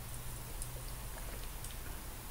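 Faint mouth clicks and swallowing as a man drinks from an aluminium energy-drink can, over a steady low hum.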